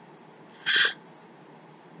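One short, sharp breath from a man, about two-thirds of a second in, over faint steady room hiss.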